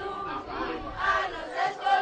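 A crowd of voices shouting and chanting together.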